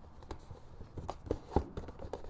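Light handling of a cardboard box and its packaging: a scatter of small taps, clicks and scrapes as hands reach inside, the strongest knock about one and a half seconds in.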